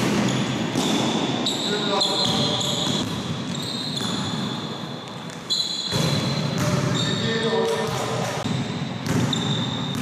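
Basketball game on an indoor court: the ball bouncing on the sports floor and sneakers squeaking, with players' indistinct voices, echoing in a large hall.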